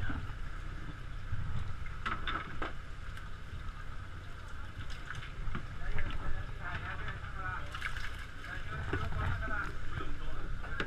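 Steady low rumble of a fishing boat's engine, with wind on the microphone. Voices talk in the background during the second half.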